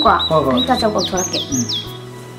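Small bird chirping: high, short chirps that fall quickly in pitch, several in a row in the second half, heard under a woman's speech.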